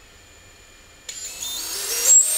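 Brushless FPV quad motor, props off, running the FlightOne motor health test: after a quieter first second it spins up with a whine that rises in distinct steps as the test takes it through its throttle levels.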